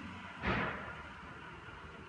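A single short, dull thump about half a second in, dying away quickly over faint room noise.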